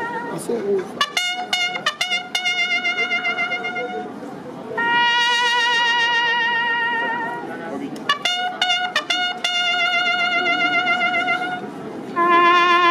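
A solo trumpet plays a slow military bugle call of military funeral honours. The call mixes runs of short, quick notes with long held notes that waver with vibrato.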